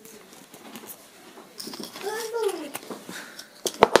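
A young child makes one rising-then-falling vocal sound about halfway through, over light handling noise. Near the end come a few sharp knocks as the pieces of a toy cow puzzle are pushed together.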